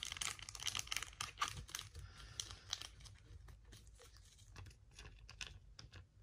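Trading cards handled and flipped through by hand: a quiet run of quick clicks and rustles as card stock slides against card, busiest in the first half and thinning to scattered faint clicks.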